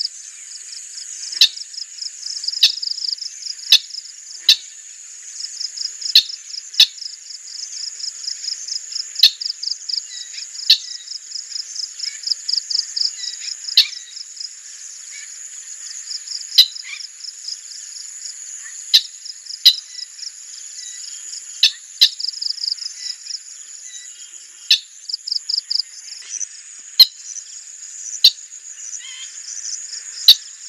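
A steady chorus of insects, a high, fast-pulsing trill. Sharp, very short chips or ticks cut through it at irregular intervals, about one every second or two, and these are the loudest sounds.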